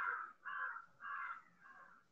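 A bird calling four times in quick succession: short calls about half a second apart.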